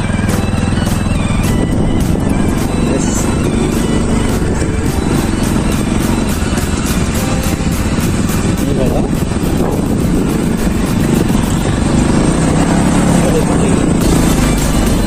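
Motorcycle engine running under way with wind noise, steady throughout, mixed with a song that has a steady beat.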